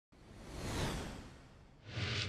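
Whoosh sound effects of an animated logo intro. One swelling whoosh peaks a little under a second in and fades, then a second one begins near the end.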